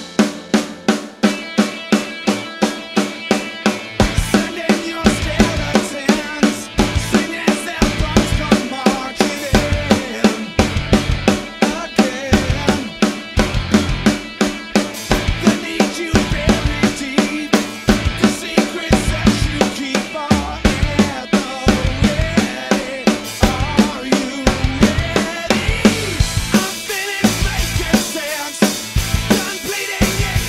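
Acoustic drum kit with Evans heads played along to a rock song recording with guitar. Fast, even strokes run throughout, and heavy kick and snare hits come in about four seconds in.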